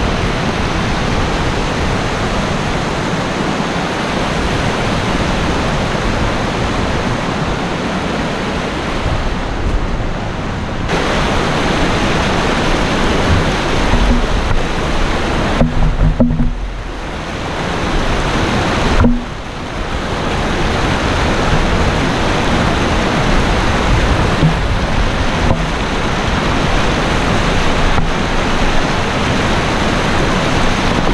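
Whitewater of a mountain stream rushing over rocks, a loud steady noise of water that dips briefly about halfway through.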